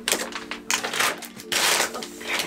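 Plastic packaging wrap around a rolled futon crackling and rustling as it is handled, in several short bursts with a longer rustle near the end.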